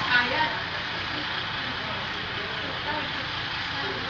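Indistinct voices talking over a steady background noise, the talk clearest in the first half second.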